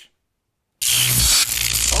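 Dead silence for most of a second, then a sudden loud electric-shock sound effect: a harsh, dense hiss of static with a low hum underneath.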